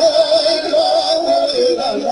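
Music: a woman singing a high, wavering melodic line that steps up and down in pitch.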